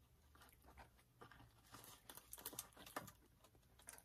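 Faint rustling and soft clicks of cardboard takeout boxes and foil wrapping being handled and shifted, a little busier after about a second.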